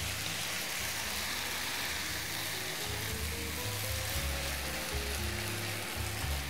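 Chicken strips and broccoli frying in a pan, a steady sizzle, with background music playing over it.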